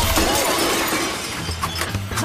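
Cartoon sound effect of glass and china shattering: a sudden crash at the start that trails off over about a second, as breakable shop wares are smashed.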